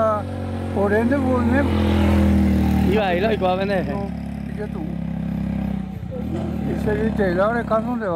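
A man talking in short spells over the low hum of a vehicle engine passing on the road, loudest about two seconds in and fading away by about six seconds.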